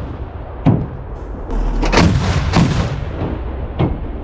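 Truck-mounted anti-aircraft gun firing single shots, four sharp blasts roughly a second apart, each trailing off in a low rumble.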